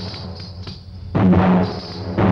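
Film music built on a large drum beaten with a stick: one heavy, booming stroke about a second in that rings out for about half a second, in a slow beat about a second apart. A high jingle, like dancers' ankle bells, fills the gaps between the strokes.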